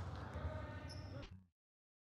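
Faint sports-hall ambience with distant voices, which cuts off abruptly to dead silence about one and a half seconds in.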